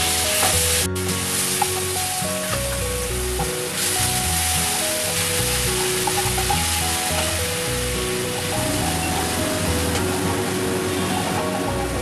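Onion-ginger-garlic-chilli paste sizzling steadily as it fries in hot ghee, under background music of short held notes.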